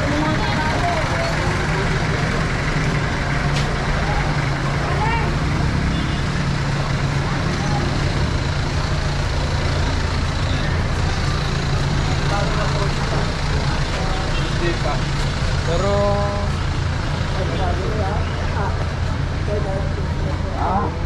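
Street traffic noise with a motor vehicle engine running steadily as a low hum, and passers-by talking intermittently.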